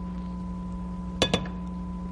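A utensil clinks twice in quick succession against a dish, with a short ringing tone, as more mayonnaise is worked into a bowl of tuna salad. A low steady hum runs underneath.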